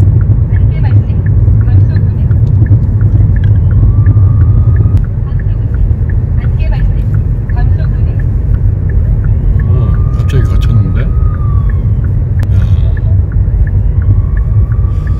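Car cabin road noise while driving at speed: a loud, steady low rumble from tyres and engine, with faint regular ticking above it.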